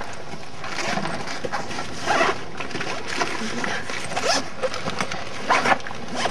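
A zippered fabric bag being opened and rummaged through: several short zipper pulls and rustles of the bag and its contents.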